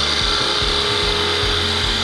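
Record Power wood lathe running with a hand-held turning tool cutting a small spinning wooden piece: a steady hiss of the cut over the lathe motor's hum.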